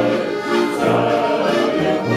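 A group of men singing a Bavarian folk song in chorus, accompanied by diatonic button accordions (Steirische Harmonika), with accordion bass notes on the beat.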